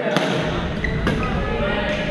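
Badminton rackets striking a shuttlecock during a rally, two sharp strikes about a second apart, ringing in a large gym hall over background chatter.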